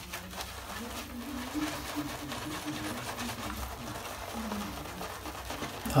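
Two-band badger shaving brush swirling a wet shaving-cream lather over the face: a soft, steady, bristly swishing. The brush is holding too much water. A faint low tone wavers in and out underneath.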